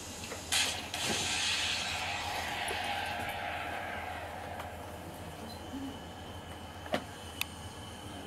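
Soundtrack of weapons-test footage played over loudspeakers in a room: a sharp bang about half a second in, then a rushing noise that slowly fades away, with two short clicks near the end. A steady electrical hum runs underneath.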